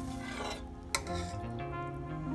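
Instant noodles bubbling in a stainless steel pot, with a single sharp click of a metal slotted skimmer against the pot just under a second in. Soft background music with held notes plays underneath.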